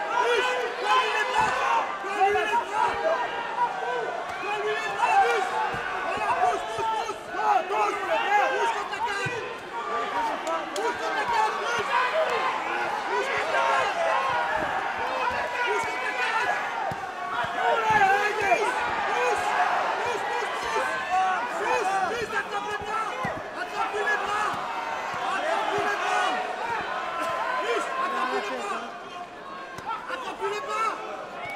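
Spectators shouting and calling out, many voices overlapping without a break, with a few dull thuds.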